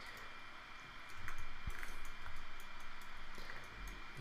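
A few scattered clicks of a computer keyboard and mouse over a steady low hiss of microphone room noise.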